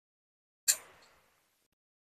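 A single short crunchy chewing sound about a second in, from a mouthful of food being eaten by hand. It starts sharply and fades quickly, with silence around it.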